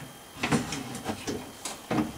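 Window regulator rail and cables knocking and rattling against the inside of a BMW E46 car door as they are handled and fitted by hand: a few irregular clicks and knocks, starting about half a second in.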